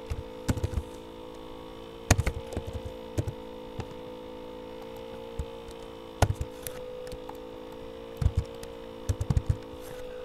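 Scattered clicks and key taps from a computer keyboard and mouse while an equation is being edited, the sharpest about two and six seconds in, over a steady electrical hum.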